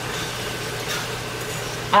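Ground beef frying in its own undrained fat in a skillet, a steady sizzle, while a fork stirs it.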